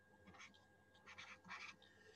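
Faint scratching of a stylus writing on a tablet screen, a few short strokes.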